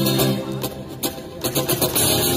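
Live acoustic guitar between sung lines: a held chord fades away, then picked and strummed notes come back in over the second half.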